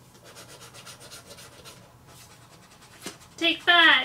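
Coins scratching the latex coating off lottery scratch-off tickets in soft, repeated rubbing strokes. Near the end comes a loud, high, voice-like sound, twice, falling in pitch.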